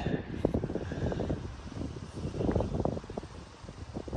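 Wind noise on an outdoor microphone: a steady low rumble with many irregular soft knocks and rustles as a person walks along.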